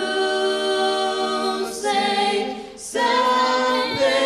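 Mixed a cappella vocal group of two male and three female voices singing sustained chords in close harmony through microphones, with no instruments. The chord shifts about two seconds in, the sound eases off, and a fuller, louder chord comes in near the three-second mark.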